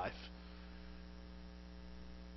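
Faint, steady electrical mains hum with no other sound.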